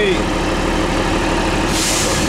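City bus engine idling with a steady low hum, and a short hiss of air near the end.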